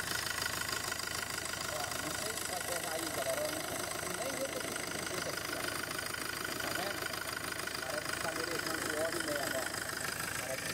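Ford Ranger's turbocharged engine idling steadily, just after a cylinder head rebuild.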